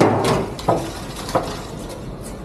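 Metal trays knocking against a stainless-steel counter: three sharp clacks about two-thirds of a second apart, over faint background noise.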